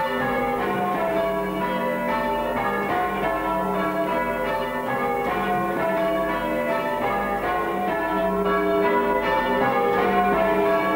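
Church bells rung in changes: a steady, unbroken succession of overlapping bell strokes at different pitches.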